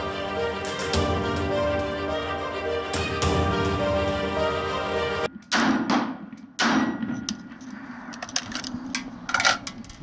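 Background music for about five seconds, then two gunshots about a second apart from a 7.62x39 AR short-barrelled rifle, each with a short ringing tail, followed by several lighter clicks and knocks.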